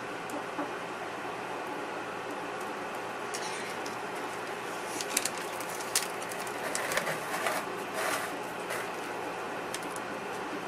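Handling sounds at a work table: scattered small clicks, taps and rustles from about three seconds in, as a gloved hand shifts a small plastic dye pot and turns the bath bomb on its board. A steady hiss of room noise runs underneath.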